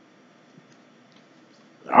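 A pause in a man's talk: low room tone with a few faint small sounds, then his voice comes in right at the end.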